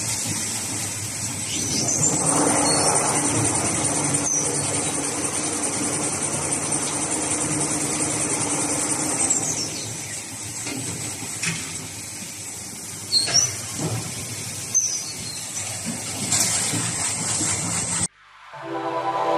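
Automatic toilet paper rewinding machine running with a steady mechanical noise. A high whine rises about two seconds in, holds for several seconds and falls away near the middle. A few short, sharp sounds follow later on.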